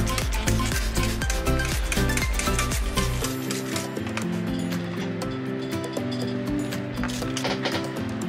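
Background music with steady melodic tones. Over it, a hand spray bottle gives repeated short hissing squirts, misting water onto the soil and glass of a closed terrarium, mostly in the first half.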